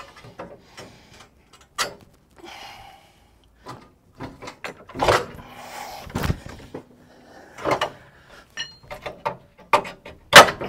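Irregular metallic clanks and knocks of a heavy-duty coil spring being worked into its seat on a Land Rover Defender's axle. About six seconds in comes a heavy thud as a person's full weight drops onto the body to compress the suspension and push the spring home.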